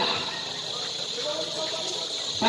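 Indistinct voices and background chatter of players and spectators, no single voice clear, with a faint voice line near the end.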